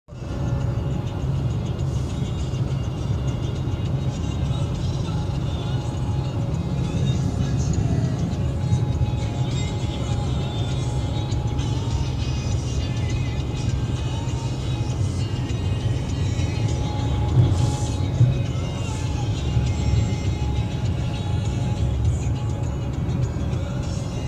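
Steady road and tyre rumble inside a car's cabin at highway speed, with music playing over it.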